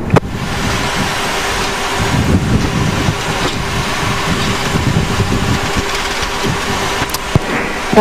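Boeing 737-800 flight deck noise while rolling slowly on the runway after landing: a steady rushing hiss over an uneven low rumble, with a faint steady hum in the first half. A single sharp click comes near the end.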